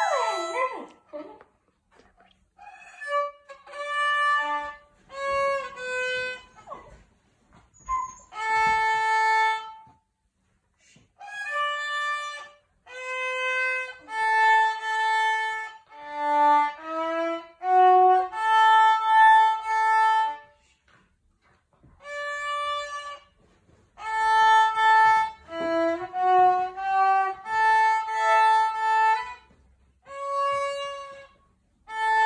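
Solo acoustic violin played with the bow: a simple melody of held notes in short phrases separated by brief pauses, with a quick downward slide in pitch about a second in.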